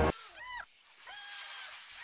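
Animal calls over a faint high hiss of forest ambience: a short rising-and-falling call about half a second in, then a longer, held, slightly falling call.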